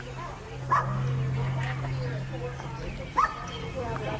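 A dog yipping twice, short rising yelps, over a steady low hum.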